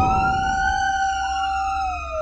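Fire engine siren sounding, heard from inside the cab: overlapping siren tones, one held steady and then falling away near the end while another rises and falls, over a low engine rumble.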